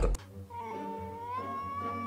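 A single long, high-pitched meow-like cry starting about half a second in, its pitch rising slowly as it is held, over a faint low hum.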